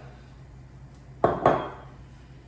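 A glass champagne bottle set down on a granite countertop: two sharp clunks about a fifth of a second apart, with a brief ring.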